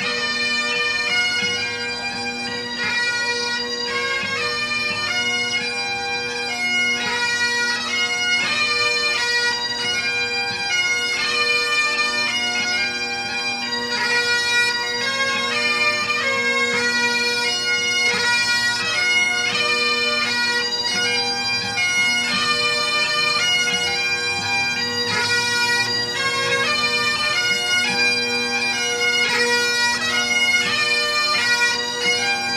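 Several Great Highland bagpipes playing a marching tune together: a melody of changing notes over steady, unbroken drones.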